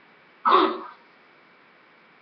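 A woman clears her throat once, a short rough burst about half a second in, followed by faint room hiss.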